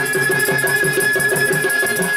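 Baul folk ensemble playing an instrumental interlude: a flute holds one long high note over a fast, steady rhythm of plucked dotara and dhol, with small juri hand cymbals chiming on top.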